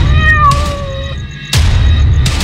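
A cat meowing once, a single drawn-out call about a second long that falls slightly in pitch. It sits over background music with a deep pulsing beat, which comes back strongly about a second and a half in.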